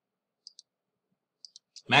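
A few faint computer mouse clicks, heard as two quick pairs about a second apart, advancing the slide. Near silence lies between them.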